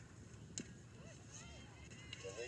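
Near silence with faint commentary; one short word is spoken about half a second in.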